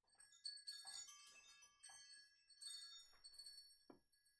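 Faint tinkling chimes: high metallic notes struck irregularly, a few times a second, each ringing on and overlapping the next. A short soft knock comes near the end.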